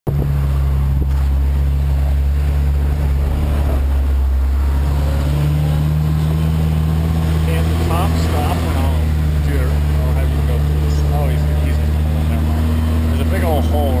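Engine of a 4x4 droning steadily from inside the cabin as it is driven slowly over dirt, its pitch stepping up slightly about five seconds in.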